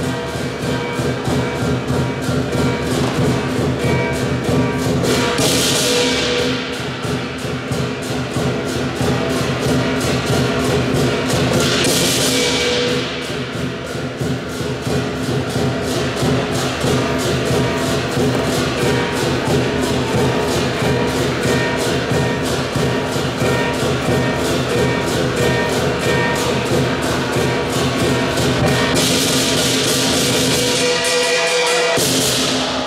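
Southern Chinese lion dance percussion band: a large lion drum beaten in a fast, steady rhythm with cymbals and gong, with loud cymbal crashes about five and a half and twelve seconds in and again near the end.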